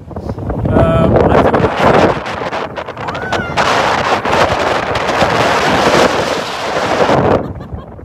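Wind buffeting a phone's microphone in heavy gusts, a loud rushing and rumbling that is strongest through the second half and drops away near the end.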